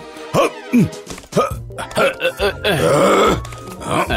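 Cartoon soundtrack: background music with several short voice-like exclamations that glide up and down in pitch, and a brief noisy swell about three seconds in.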